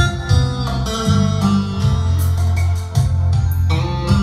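Live instrumental music with no singing: a melody over a steady bass line, played on an electronic keyboard.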